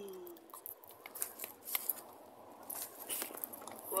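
Scattered small clicks, taps and rustles of a phone with an attached microphone being handled and adjusted close to the mic, with the tail of a hummed "mm" fading out at the start.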